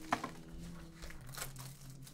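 Plastic shrink wrap on a sealed trading-card box crinkling and tearing as it is handled and unwrapped, with a sharp tap about a tenth of a second in.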